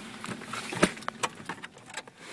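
A few scattered clicks and small knocks inside a parked car, the loudest just under a second in.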